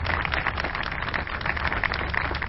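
Crowd applauding: a dense, steady patter of many hands clapping, with a low steady hum underneath.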